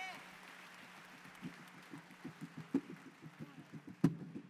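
A live band softly starting the intro of a song: scattered low notes begin about a second and a half in and come more often toward the end, over a steady low amplifier hum. A short rising-and-falling call comes at the very start.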